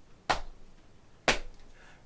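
Two hand slaps on the knees, about a second apart, keeping a steady beat.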